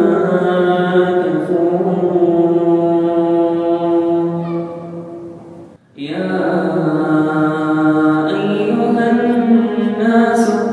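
Solo male voice reciting the Quran in melodic tajweed style, holding long drawn-out notes. The phrase trails off about five seconds in, there is a brief pause near six seconds, and then the next verse begins.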